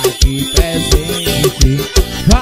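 Instrumental break of an electronic-keyboard forró/brega song: a steady kick-drum beat under synth keyboard melody lines, with no singing.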